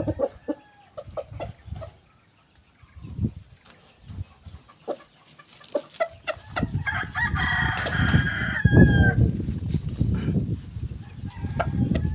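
A rooster crows once, for about two seconds, past the middle, over a low rumble. Short scattered clicks come before it.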